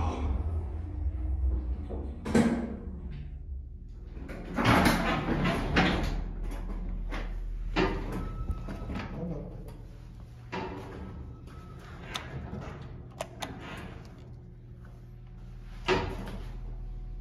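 A 1950s Otis geared traction elevator's single-slide door moving, with a clunk about two seconds in, a rumbling slide around five seconds, and then scattered clicks and knocks from the door gear. A thump comes at the end, over a steady low hum from the elevator machinery.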